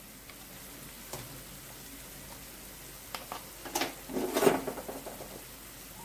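Onion-tomato masala sizzling gently in oil in a frying pan, with spice powders just added. A few short clatters come between about three and five seconds in, the loudest near four and a half seconds.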